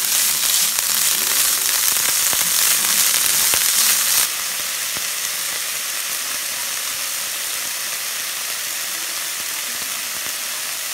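Shredded carrot and dark strips sizzling in oil in a frying pan while being stirred with chopsticks, with faint clicks. The sizzle drops suddenly to a quieter, steady level about four seconds in.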